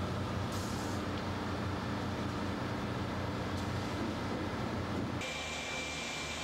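Steady machinery drone of a concrete batching plant in operation, with a low hum. About five seconds in it changes abruptly to a different steady plant hum with a thin high-pitched whine.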